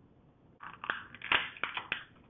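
Crinkling and crackling of thin clear plastic blister packaging as a tiny toy car is pulled out of it, with several sharp clicks. It starts about half a second in.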